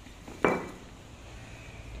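A single sharp clink of a hard object being handled, with a brief ringing note, about half a second in, over a steady low background hum.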